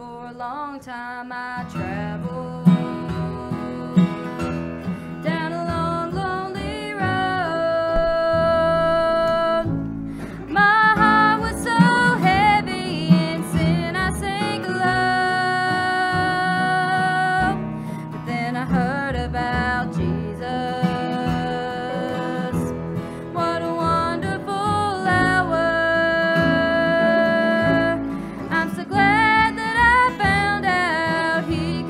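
A woman singing a gospel song, accompanied by acoustic guitar and upright double bass, holding several long notes.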